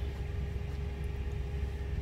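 Diesel engine of a semi truck idling, a steady low rumble with a faint steady hum over it, heard from inside the cab.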